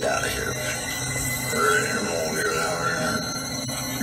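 Satellite radio broadcast playing through a car's audio system: voices over music.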